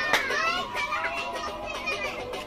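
Children's voices calling and chattering in short rising and falling cries, with a sharp knock just after the start.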